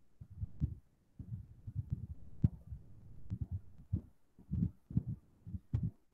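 Soft, irregular low thumps with a few sharp clicks among them, and no speech.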